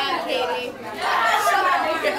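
Several voices talking at once, with no one voice clear: classroom chatter of students and teachers.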